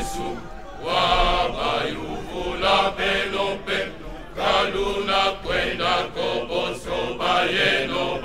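Men's choir singing together in short, repeated phrases.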